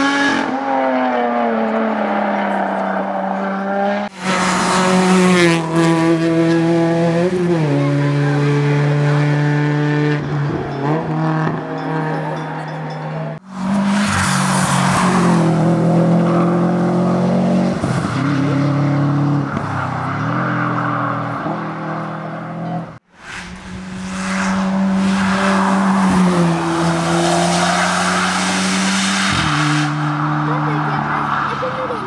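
Competition cars run hard on a hill slalom one after another, among them a Subaru Impreza STI. The engines rev high, their pitch stepping up and down through the gear changes, with some tyre squeal. The sound drops out briefly three times as one car gives way to the next.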